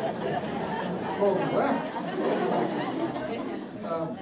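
Several people talking over one another: indistinct chatter in a room full of people.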